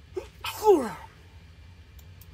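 A person sneezing once, about half a second in: a short lead-in sound, then a loud burst with a sharply falling voice.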